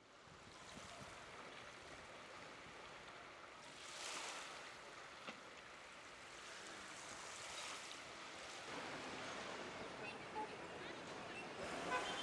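Calm sea lapping gently at the shore: a faint, steady wash of water with a couple of soft swells a few seconds apart.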